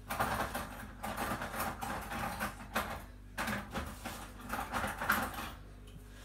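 Rummaging for a spoon in the kitchen: an irregular run of small knocks and rattles of utensils and household items being moved about, with a brief lull about halfway through.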